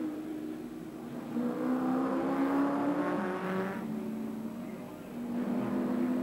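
A touring-car racing engine passing under power, from an off-air TV recording. The engine note swells about one and a half seconds in, is loudest in the middle, and fades away before the end.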